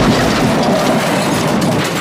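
Car crash sound effect: a steady, dense noise of vehicles colliding, with no single loud bang.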